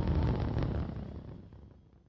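Rumble of the LVM3 rocket's twin S200 solid boosters during ascent, a low noise that fades out over the second half.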